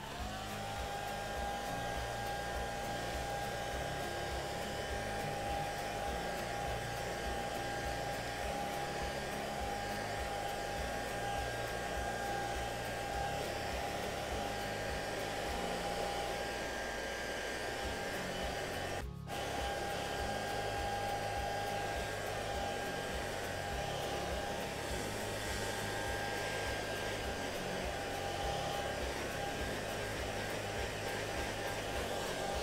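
Hand-held hair dryer blowing hot air across a wet silkscreen mesh to dry it before the next print. It switches on at the start and runs steadily, a rush of air with a steady whine, and cuts out for a split second about two-thirds of the way in.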